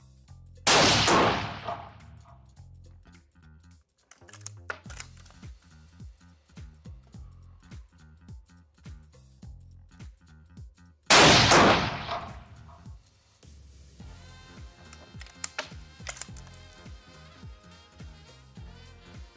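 Two rifle shots from a scoped bolt-action rifle, about ten seconds apart, each with a long echoing decay. They are test shots checking the zero after scope adjustments. Background music runs throughout.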